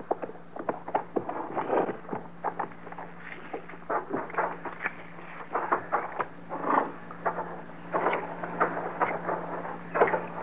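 Radio-drama sound effects of footsteps scuffing on dirt, irregular and uneven, over a low steady hum in the old recording.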